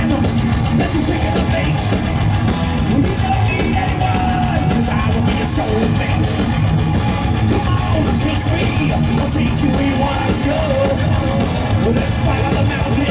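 Thrash metal band playing live: distorted electric guitars, bass and drum kit through a loud concert PA, dense and unbroken.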